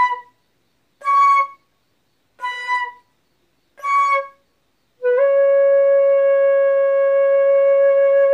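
A solo flute playing a slow prayerful line: four short notes around the same pitch, separated by pauses, then a long held note beginning about five seconds in.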